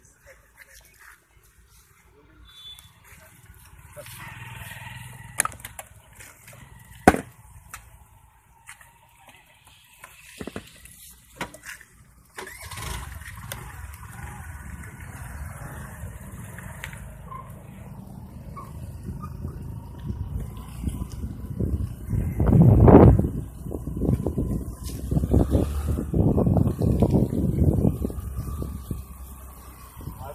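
Low rumbling road and wind noise of an electric bicycle being ridden, starting about midway and growing loudest in the second half. A few sharp clicks come in the quieter first half.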